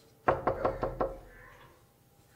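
Knocking on a door: five quick, evenly spaced knocks, about five a second, starting about a quarter of a second in and over by the one-second mark.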